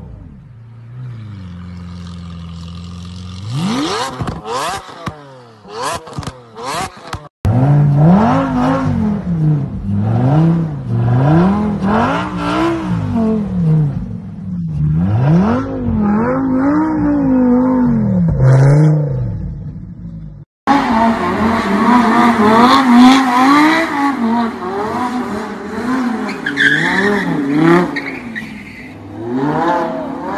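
Lamborghini engines revving during donuts, in three clips split by hard cuts. First a steady low engine note, then sharp rising revs from an Aventador's V12. Then a Huracán's V10 swings up and down in pitch every second or so as it spins, and in the last clip revving with tire squeal.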